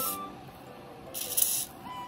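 An aerosol spray can with a straw nozzle gives one short hiss of about half a second, a little past the middle.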